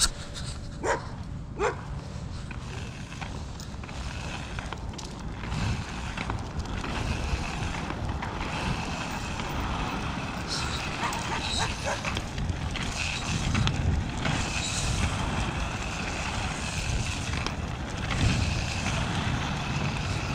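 A dog gives a few short, rising whining cries near the start, then steady rushing noise with a low rumble runs on.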